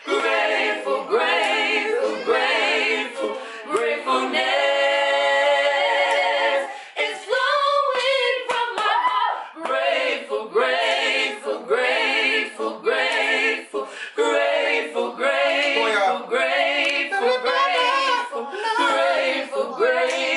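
Unaccompanied voices singing together, a woman's voice among them, with one long held note about four seconds in.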